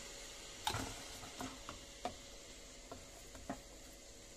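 Spatula stirring and scraping thick zucchini puree in a kitchen machine's stainless steel bowl: a few soft scrapes and light knocks, irregularly spaced, over a faint steady hum.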